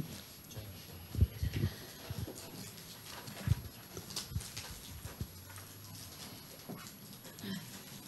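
Quiet meeting room with a faint steady hum and a few soft, scattered knocks and handling noises, as of objects and papers moved on a table, the clearest about a second in and just past the middle.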